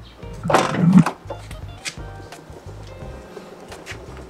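Background music with steady low notes throughout. A short, loud, voice-like cry sounds about half a second in.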